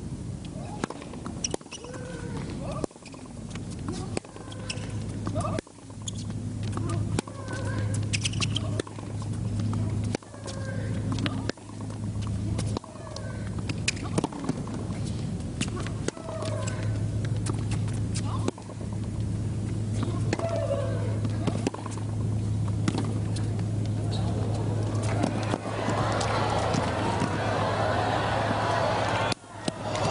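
Tennis rally: the ball is struck back and forth about once every second and a half, the hits coming with players' short grunts or cries, over a steady low electrical hum. Near the end a crowd's cheering rises.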